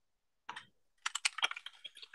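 Typing on a computer keyboard, entering a command in a terminal: a single keystroke about half a second in, then a quick run of about a dozen keystrokes.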